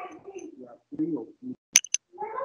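Indistinct, compressed voices coming over a video call, with two short sharp clicks near the end.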